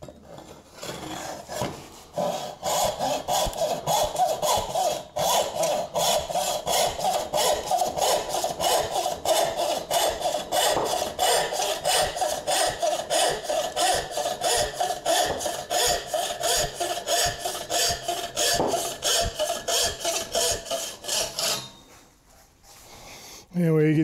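Danish frame saw rip-cutting a board along the grain, in fast, even strokes about three a second. The sawing stops a couple of seconds before the end.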